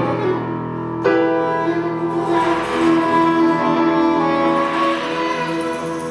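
Live band music: a grand piano played, with a new chord struck about a second in, under long held melody notes from another instrument.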